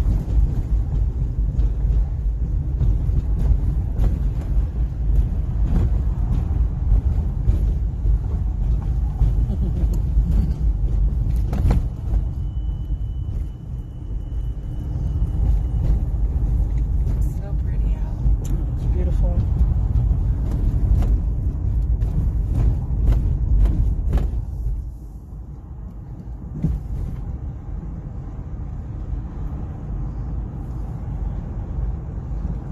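Road noise inside a moving car: a steady low rumble of tyres and engine with a few small knocks, turning quieter about 25 seconds in.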